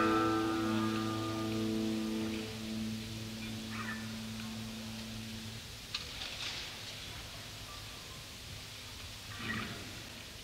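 Live band's held closing chord ringing out and fading away over the first half, followed by hall crowd noise with a few scattered shouts, on a hissy audience tape.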